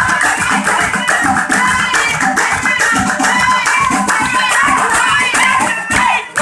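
A group of women singing together to loud, fast rhythmic hand-clapping and rattling percussion, a lively wedding song performed live in a crowded room.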